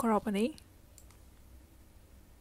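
A short spoken word at the start, then a faint single mouse click about a second in, over a low steady hum.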